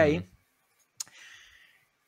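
A man's short "mm". About a second later comes one sharp click, followed by a brief soft hiss.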